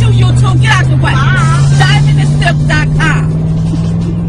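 Women's voices chanting and whooping over music. A loud, sustained low bass note slowly rises in pitch underneath, and the voices drop out about three seconds in.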